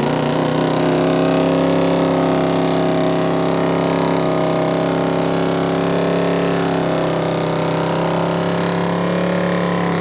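Mud bog truck's engine held at steady high revs, one loud even drone.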